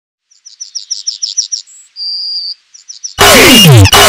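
Birdsong: a quick run of high chirps, a brief high note and a held whistle, then a few more chirps. Just over three seconds in, a much louder alarm sound cuts in, repeating falling sweeps about every 0.7 s over a steady high tone.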